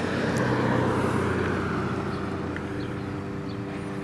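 A motor vehicle passing by, its noise swelling early on and fading away over a steady low engine hum.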